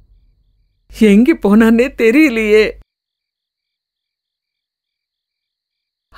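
A woman speaking Tamil in an upset, wavering voice for about two seconds, then dead silence.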